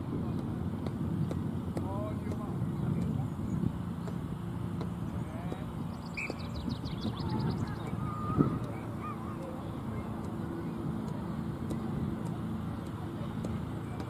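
Open-air ambience with a low steady hum and faint distant voices or calls. A small bird sings a short trill about six seconds in, and a single sharp thump a little after eight seconds is the loudest moment.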